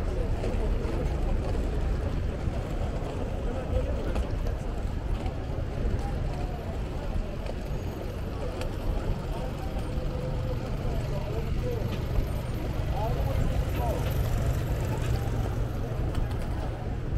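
City street ambience: indistinct voices of people nearby over a steady low rumble of traffic.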